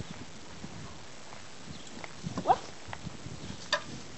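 Small clicks and knocks of a dog's draft harness and cart fittings being handled, with one sharp click near the end.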